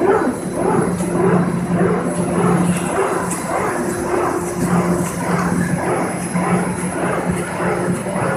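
Corrugated-board production line and stacker conveyor running: a continuous loud machine drone with a steady low hum under a busy mechanical rumble.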